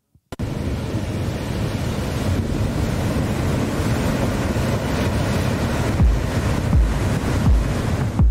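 Ocean surf, a steady wash of breaking waves, starting suddenly. Near the end a few deep bass thumps come in.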